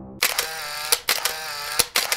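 Sound effect of a wavering whirr broken by sharp clicks that recur about every 0.8 seconds, a camera-like shutter and winder sound.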